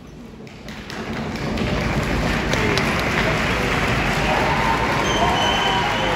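A crowd cheering and applauding in a large hall, swelling about a second in and staying loud.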